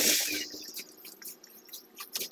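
Wet hand-mixed concrete sliding out of a tipped wheelbarrow onto the roof slab: a sudden wet slop at the start that trails off over about half a second, followed by a few faint knocks.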